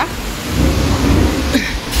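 Low rumbling and rustling of a phone microphone being handled and knocked about while its holder climbs into a tight space, with a sharp click near the end.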